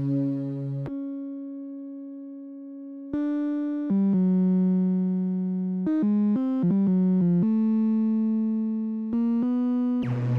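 Electronic music: a single synthesizer voice plays a slow melody of held notes, with a quick run of short notes a little past the middle and no beat.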